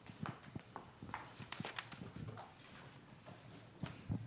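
Faint footsteps on a hard floor, a series of irregular clicks and knocks as a person walks.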